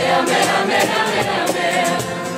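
Live acoustic band music with double bass and guitar, carried by many voices singing a wordless chorus together.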